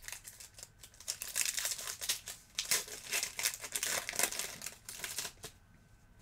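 Wrapper of a Panini Donruss Elite WWE trading card pack crinkling as it is torn open by hand: a run of crackles lasting about five seconds that stops shortly before the end.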